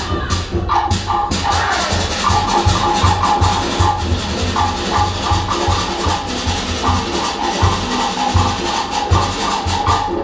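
Live Cook Islands drumming for a dance: rapid wooden log-drum strokes over a regular deep bass-drum beat, with higher voices carrying a line above it.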